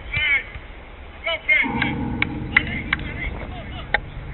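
Players shouting during a five-a-side football game, followed by a run of sharp knocks, likely the ball being kicked or bounced. From about halfway through, a low steady rumble sits underneath.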